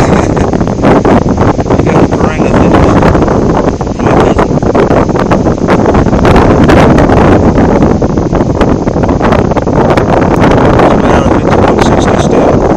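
Loud wind noise buffeting a phone microphone, uneven and gusting, with a brief dip about four seconds in.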